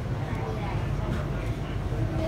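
Steady low hum of a Bombardier Innovia Monorail 300 train standing still, heard from inside the front of the car, with faint voices of people on board.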